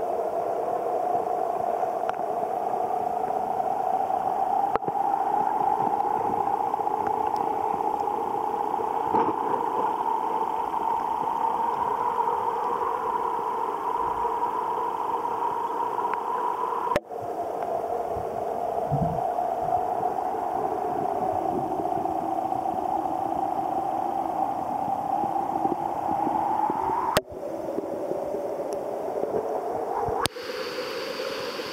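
Flowing river water heard from underwater through a submerged camera: a steady, muffled drone whose pitch drifts slowly upward, broken by two abrupt cuts, about 17 and 27 seconds in.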